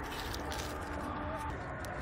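Tractor engine idling steadily, a low even rumble.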